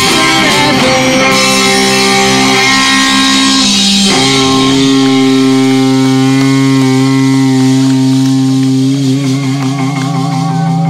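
Electric guitar and bass guitar letting long notes ring out through their amps at the close of a rock song, with a cymbal wash fading in the first second. The held notes change pitch about a second in and again about four seconds in, and they start to waver near the end.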